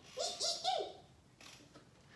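A woman's short three-note vocalisation in the first second, not clear words, then faint handling noise with a light click about one and a half seconds in.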